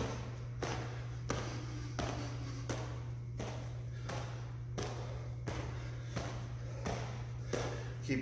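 Bare feet thudding and shuffling on a gym mat in a quick, even rhythm of about two to three steps a second as a kickboxer throws fast alternating kicks, over a steady low hum.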